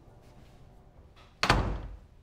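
A door slammed shut: one loud bang about one and a half seconds in, dying away quickly.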